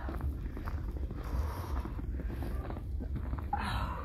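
Footsteps through fresh snow with wind rumbling on the phone microphone, as a plastic recycling bin is carried along. A short scraping rustle comes about three and a half seconds in.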